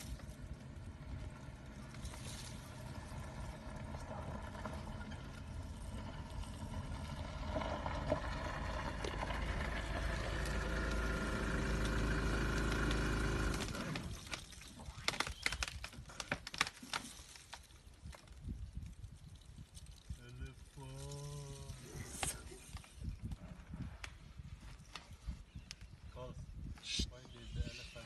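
A vehicle engine idles steadily, growing louder, then cuts off suddenly about halfway. After that, scattered sharp cracks and snaps of branches come as an elephant tears at a tree, with a short voice-like hum a few seconds before the end.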